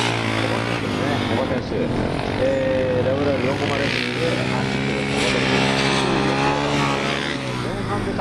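Yamaha WR450F single-cylinder four-stroke motorcycle engine being ridden hard, its note rising and falling with throttle changes as the bike accelerates and slows through tight turns.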